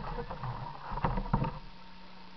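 A few sharp knocks and clicks as the 1:8 scale RC car is handled, picked up close by its onboard camera, over a faint steady hum.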